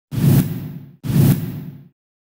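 Logo-intro sound effect: two identical swooshes, each about a second long, with a deep low end and a hiss on top. Each starts sharply and fades away.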